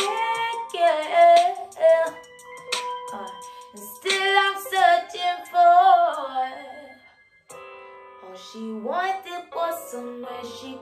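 A woman singing long, sliding vocal runs over soft held backing chords. The sound drops away briefly about seven seconds in, then the chords and voice return.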